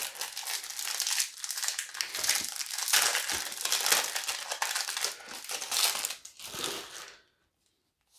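Clear plastic wrapping crinkling and crackling as a stack of game cards is worked out of it, the noise stopping about seven seconds in.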